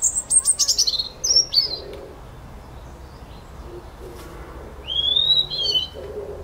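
A wild songbird singing: a quick run of high notes falling in pitch over the first two seconds, then a shorter, wavering high phrase near the end.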